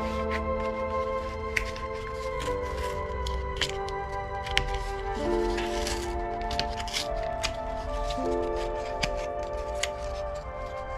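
Background music of slow, held chords that change every couple of seconds. Over it, crisp clicks and short rustles of a cardboard package of wooden plant labels being opened and handled.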